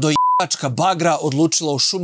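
A short, steady censor bleep, about a quarter second long, blanking out a word, followed by a man talking.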